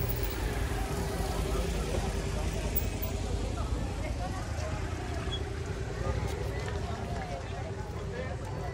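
Street ambience: a steady low rumble of traffic with indistinct voices in the background.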